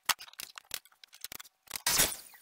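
Tools and scrap wood being handled on a workbench: a string of short clicks and knocks, with a louder clatter near the end.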